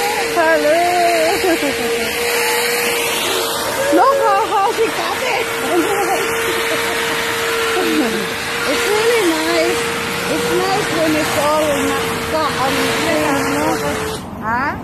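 Electric lawnmower running with a steady whine under people talking and laughing; the motor cuts off abruptly at the end.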